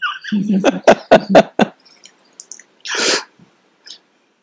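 A man laughing in a run of short, evenly spaced bursts for about a second and a half, then one sharp, breathy exhale about three seconds in.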